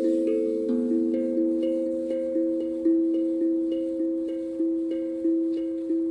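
Hapi steel tongue drum tuned to the A Akebono scale, played with mallets: single notes struck about every half second, each ringing on and overlapping the next in a slow melody.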